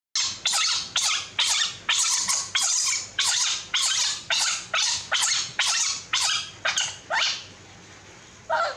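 Newborn macaque crying: a quick series of about fifteen short, shrill calls, roughly two a second, that stops about seven seconds in.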